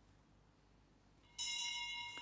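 A bell struck once about one and a half seconds in, after near silence, ringing on with many high overtones and slowly fading.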